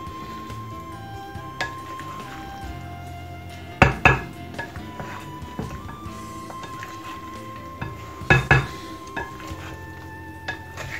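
A utensil knocking and clinking against the bowl while potato salad is stirred, with two louder pairs of knocks, about four seconds in and again about eight and a half seconds in, over steady background music.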